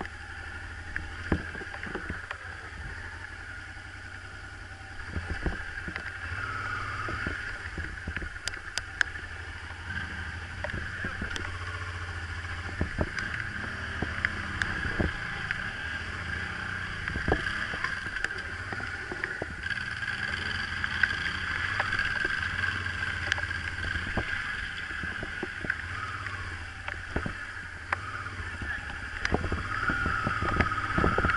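Engines running steadily, from a motorcycle idling and a small tractor's diesel working in the mud close by, with many scattered sharp knocks and clatters. The level rises about five seconds in and again around twenty seconds.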